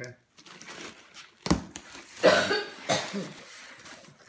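A cardboard box being opened by hand, its flaps and the packing paper inside rustling, with a sharp knock about a second and a half in. A person's voice sounds briefly around the middle.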